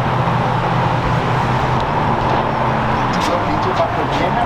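Steady road-traffic noise, a constant hum and rush that starts abruptly and holds level throughout.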